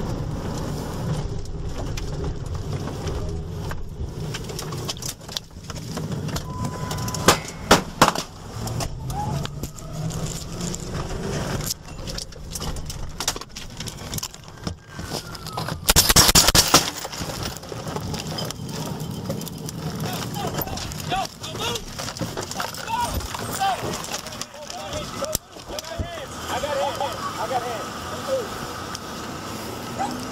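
Gunfire from inside a moving patrol car, with engine and road noise: two sharp bangs about half a second apart, then a rapid string of shots lasting about a second as the officer returns fire through the open driver window.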